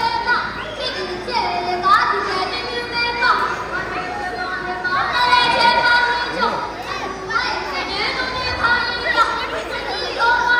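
A child singing a Tibetan opera (lhamo) song, high-pitched long held notes with sliding ornaments, in a reverberant hall.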